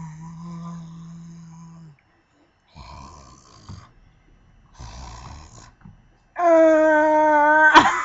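A person making wordless vocal noises: a held low droning 'uhh' for about two seconds, then two short rough, noisy sounds, then a loud held, higher-pitched 'aah' near the end.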